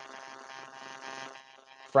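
A faint, steady electronic buzz holding one pitch, fading away near the end.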